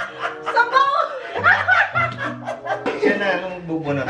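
Several people laughing and chattering together over background music with long held notes.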